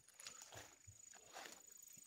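Near silence: a few faint soft scuffs of footsteps on dry grass and soil, over a steady faint high-pitched whine.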